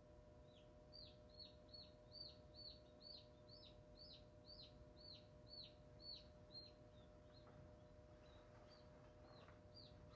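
Chick peeping inside a Hova-Bator incubator: a steady run of short, falling peeps, about two a second, that stops about six and a half seconds in, then a few fainter peeps near the end. Under them runs the incubator fan's low, steady hum.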